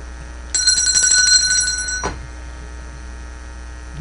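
A telephone ringing once: a high, trilling ring that starts about half a second in and stops after about a second and a half, over a steady mains hum.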